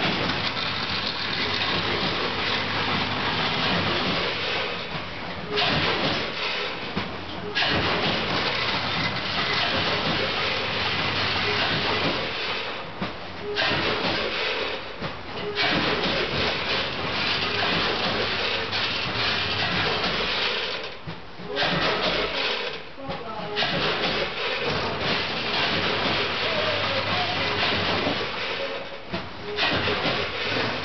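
Packaging machinery running: a bagging line with vibratory feeder and multihead weigher, giving a dense, steady hiss-like noise over a low hum. The noise drops away briefly several times.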